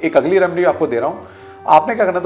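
A man's voice speaking over soft background music.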